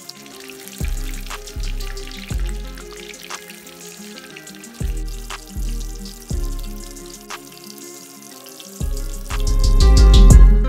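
Battered fish fillets deep-frying in hot vegetable oil in a skillet: a steady fine sizzle with scattered crackles. Background music with a bass line plays over it and swells near the end.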